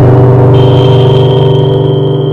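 A deep gong-like tone rich in overtones, ringing and slowly fading, with a high clear tone joining about half a second in. It is part of an art video's soundscape, heard over room speakers.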